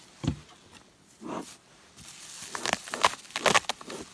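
Hands working at a wooden beehive: a knock about a quarter second in, then, in the second half, a quick run of rustling and crinkling as the hive's inner wrap is handled and peeled back.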